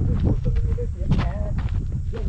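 A man's voice speaking in short, untranscribed phrases over a steady low rumble, with footsteps on a dry, stony dirt path.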